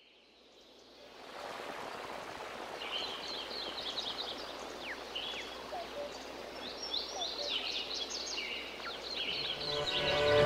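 Basketball arena game sound fading in: a steady crowd hum, broken by many quick high squeaks of sneakers on the hardwood court.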